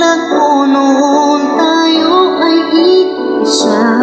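A solo singer sings a slow ballad over a sustained instrumental accompaniment. The sung notes are held and glide in pitch, and there is a short breathy hiss near the end.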